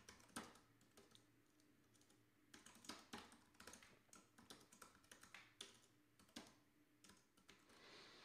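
Faint typing on a computer keyboard: quick irregular runs of keystrokes, with a pause of about a second and a half shortly after the start.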